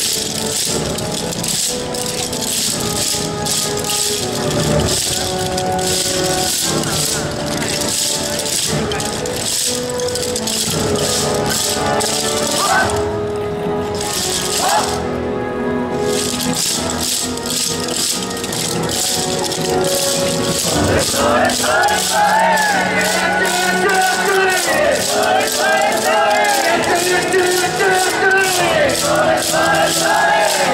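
Yosakoi dance music with many wooden naruko clappers rattling in a steady rhythm; the clappers drop out briefly around the middle, then return. In the last third a voice sings over the music.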